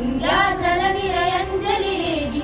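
A group of schoolgirls singing together, holding long notes.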